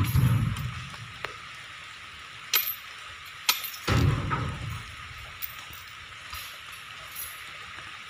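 Steady hiss of rain falling on an open loading yard. A couple of sharp knocks and some dull low thuds come through it.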